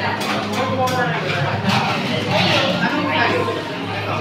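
Indistinct talk of customers and staff at a café counter over a steady low hum, with a few light clicks in the first second.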